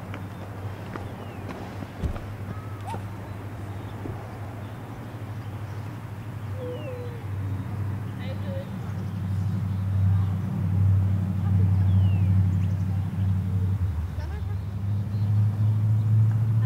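A steady low mechanical hum, like an engine running, that grows louder about halfway through. Faint distant voices and a few short high chirps sit over it.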